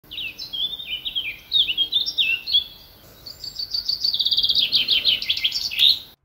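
Songbirds singing: clear high whistled notes stepping up and down in pitch, then, after a short pause, a fast run of repeated chirps.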